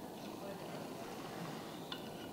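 A single sharp glass clink near the end as a glass bong's bowl piece is handled, over quiet room tone.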